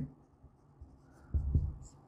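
Marker pen writing on a whiteboard in faint strokes. A short low thump comes about one and a half seconds in.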